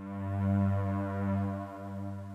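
One long, low held note from a software instrument, played back by the step sequencer, swelling in level over the first half second and easing off a little near the end.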